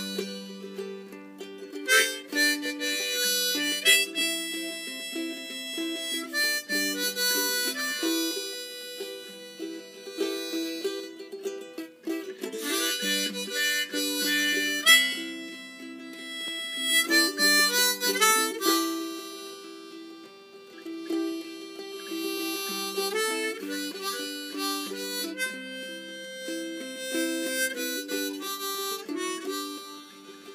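Diatonic harmonica, held in a neck rack, playing a folk melody over a strummed ukulele accompaniment, with the melody changing notes every second or so.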